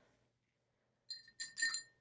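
A paintbrush clinking against a glass rinse cup: a quick cluster of light ringing clinks a little after the first second.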